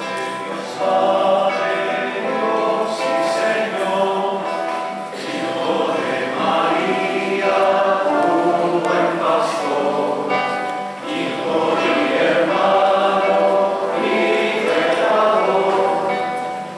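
Choir singing a hymn during the communion of a Catholic Mass, in long, sustained phrases.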